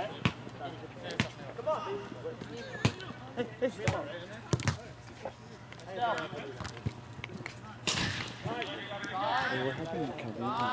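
Soccer ball being kicked and struck in play, several sharp thuds in the first five seconds, with players' distant voices.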